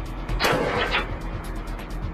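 A single sniper rifle shot about half a second in, with a short tail, over background music.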